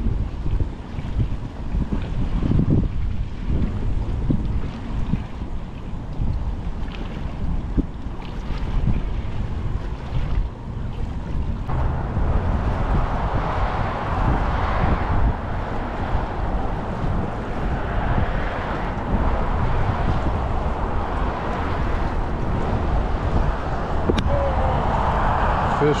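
Wind buffeting the microphone: a steady low rumble, with a louder hiss joining about halfway through and running on.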